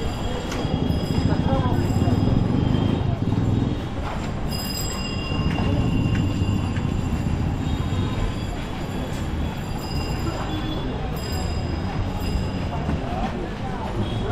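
Busy city street noise: a steady low rumble of traffic and handcarts rolling on the road, with people's voices in the background. The rumble is a little louder in the first few seconds, and faint high squeaks and clicks are heard above it.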